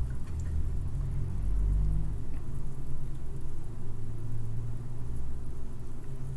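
Steady low rumble, a hum made of a few deep tones, with no other sound over it.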